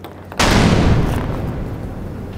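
Cinematic boom sound effect: a sudden deep hit about half a second in, fading over the next second and a half.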